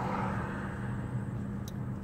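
Steady low hum of a car's engine and tyres heard from inside the cabin while driving.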